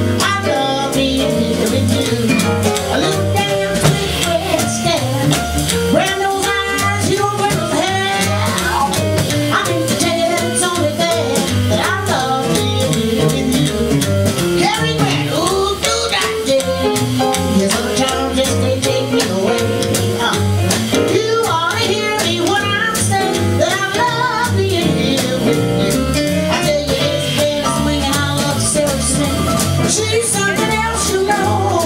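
Live jazz: a woman singing with piano, double bass and drum kit backing.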